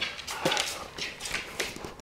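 An Irish Setter's claws clicking on a hard floor as it walks, a run of irregular ticks.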